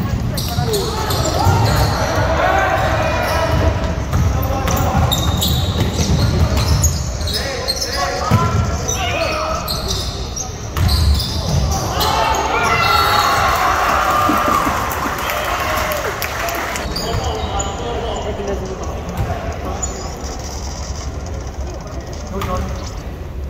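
Basketball game in a gym: a ball bouncing on the hardwood floor with players and spectators talking and shouting, echoing in the large hall. The voices rise for a few seconds around the middle.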